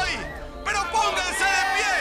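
People shouting and cheering in celebration over background music, with a brief lull about half a second in.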